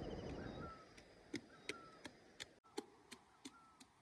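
A quick, regular series of faint sharp ticks, about three a second, each with a short falling chirp, over a faint hiss that dies away about a second in.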